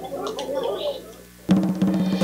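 Children's voices chattering in the first second. About a second and a half in, a loud drum strike and percussion suddenly begin a musical jingle.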